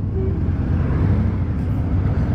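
Harley-Davidson V-twin motorcycle engine running at low speed with a steady low rumble as the bike is eased slowly into a parking spot. A broader rush of road noise swells about halfway through.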